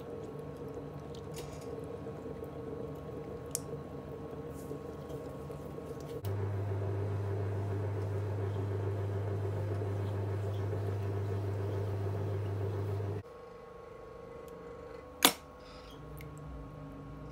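Electric pottery wheel running with a steady motor hum while wet clay squishes under the hands as it is centred and coned. About six seconds in, a louder low hum starts abruptly and stops about seven seconds later. Near the end there is one sharp click.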